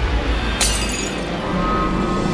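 A drinking glass shattering once, about half a second in, over orchestral trailer music.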